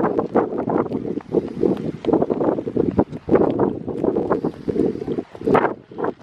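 Wind buffeting the microphone in uneven gusts, a low noise that rises and falls in level.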